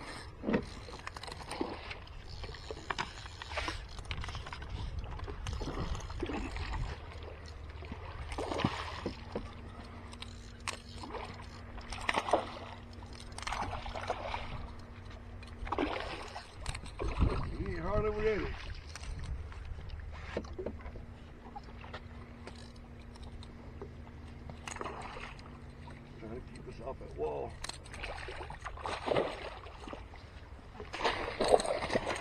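Water sloshing against the side of a small boat with wind rumble and handling knocks, and splashes as a hooked fish thrashes at the surface beside it. A steady low hum runs through two stretches in the middle.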